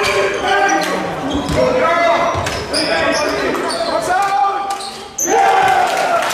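A basketball bouncing on a sports-hall floor during play, the knocks echoing in the large hall, under players' and spectators' shouting voices.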